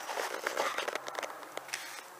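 Crackling, rustling handling noise from a handheld camera being moved, made of many small clicks over a steady hiss.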